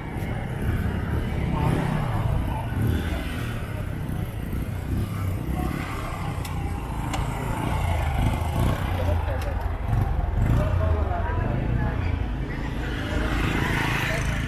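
Night street ambience: motorcycles running and passing, with people talking nearby and a steady low rumble.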